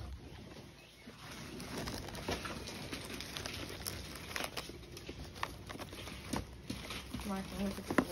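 Paper and cardboard rustling and tapping as old papers and maps in a cardboard box are flipped through by hand, over faint background voices. A short laugh comes near the end.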